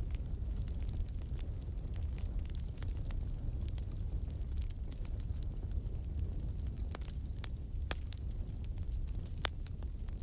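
Steady low rumble with scattered sharp clicks and crackles, and no voices.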